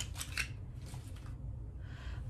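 A few short clicks and rustles in the first half second as packaging is handled, then only a low steady room hum.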